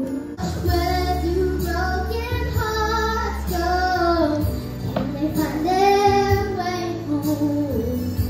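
A young girl singing a pop song into a handheld microphone, amplified through a small PA, over a recorded backing track with a steady bass line.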